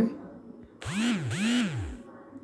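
A small electric motor spinning up and winding down twice in quick succession, its pitch rising and falling each time before it stops.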